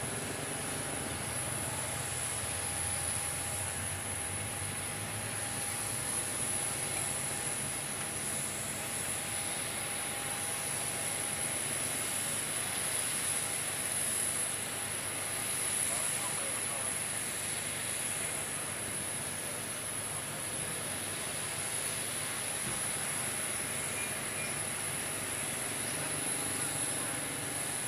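Parked Boeing 737 jet airliner running steadily, a continuous high-pitched whine over an even rumble.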